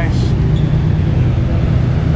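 Steady low droning hum with an even background hiss, the ambient noise of a large hall.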